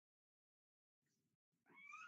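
Near silence, then near the end a high-pitched, drawn-out call begins, rising in pitch at its start.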